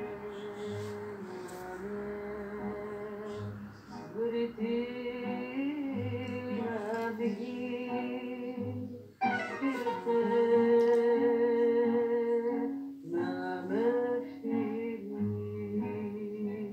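A woman singing a Greek popular song with instrumental accompaniment. The accompaniment plays alone for about four seconds, with held notes over a recurring bass note, and then the voice comes in.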